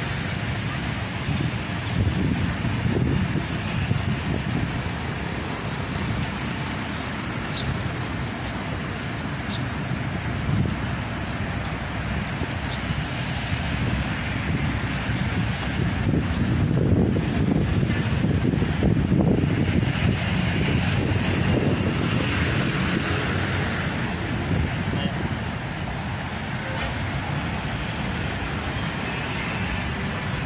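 Steady outdoor traffic noise with low indistinct voices of people talking.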